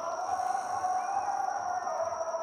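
Stadium ambience: a steady hum and murmur from the stands, with a thin steady high tone over it.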